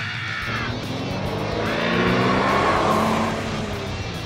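Car engine sound effect swelling up and fading away as a car passes, over background music.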